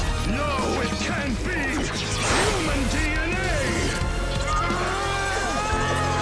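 Action-show soundtrack: dramatic background music with crashing sound effects and wordless cries over it.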